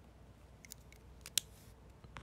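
A few small, sharp clicks: two light ones just over half a second in, then two more a little later, the last and loudest a little past halfway, followed by a brief hiss, over faint room noise.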